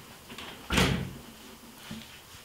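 A wooden door shutting with a single thud a little under a second in, the sound dying away over about half a second.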